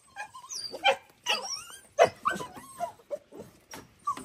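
Dogs whining and yipping in many short, high, sliding calls: the excited greeting of dogs meeting their owner again after days apart.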